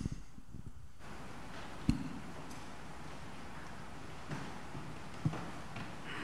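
Quiet room tone with a few isolated knocks and thumps as a person moves about: a sharp thump about two seconds in, the loudest sound, and two softer knocks near the end.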